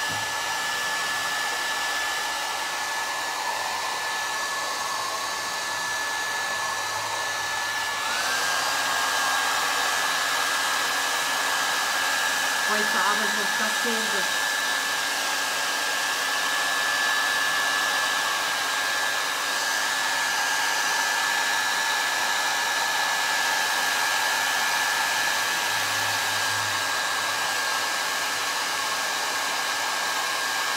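Handheld hair dryers blowing steadily to dry fresh paint on plaster frames faster. About eight seconds in a second dryer switches on: its whine rises in pitch as the motor spins up, and the overall sound gets a little louder.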